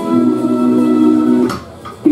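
Live band with electric guitars holding a sustained chord that cuts off about one and a half seconds in: the end of a song.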